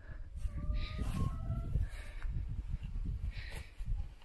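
Irregular low rumble of wind and handling noise on a handheld camera's microphone outdoors, with a few faint short high notes in the first two seconds.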